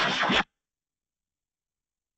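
Harsh, scratchy, distorted noise from the edited logo's soundtrack cuts off abruptly about half a second in, and then there is dead silence.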